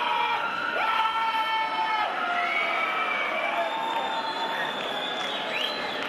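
Crowd cheering and shouting, with many voices holding long shouts over one another.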